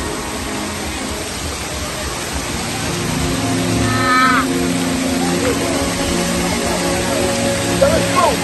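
Steady rush of a waterfall under background music with sustained low notes. A brief high cry from a person comes about four seconds in.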